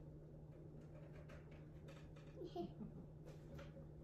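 Near silence over a steady low hum, with faint scattered clicks and scrapes of a spoon and spatula working chocolate batter in a stainless-steel mixing bowl.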